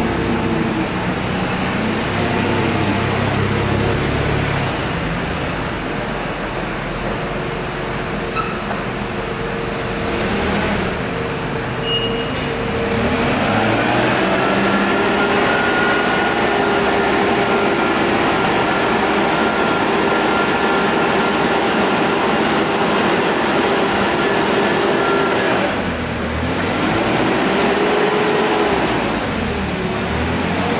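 Propane engine of a 2012 Nissan 5,000 lb forklift running. It revs up a little before halfway and holds high for about twelve seconds, with a higher whine over it, as the hydraulics raise the mast. It dips, then revs up again near the end.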